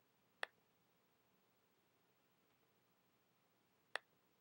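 Two sharp single clicks of a computer mouse button, about three and a half seconds apart, as the eraser tool removes table border lines; otherwise near silence.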